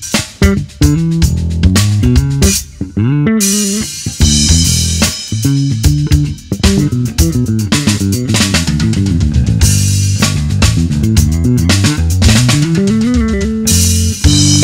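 Four-string Bacchus WL 417 AC LTD/Sakura electric bass played fingerstyle, a busy line of low notes with slides up and down, over a backing track with drums.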